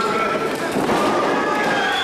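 Spectators shouting in a small hall, with a heavy thud a little under a second in as two wrestlers collide and fall onto the ring mat.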